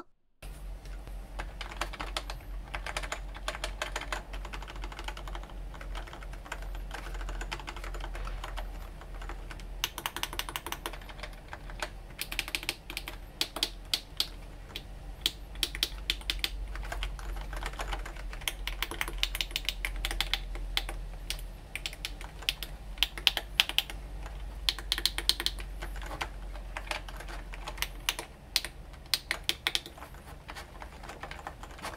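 Keys of a handmade left-hand gaming keypad being pressed rapidly and irregularly, like fast typing: a dense run of clicks, some louder than others, over a faint low hum.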